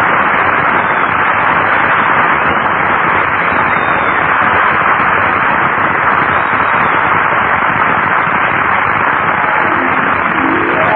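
Studio audience applauding: a loud, steady round of clapping from a large crowd.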